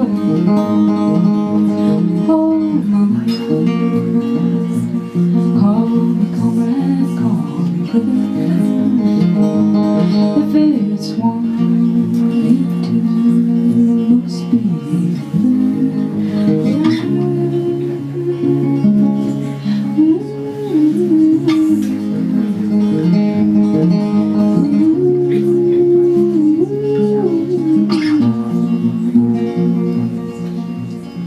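Live song on a solo acoustic guitar, played steadily throughout, with a woman's singing voice carrying a melody over it, most clearly in the second half.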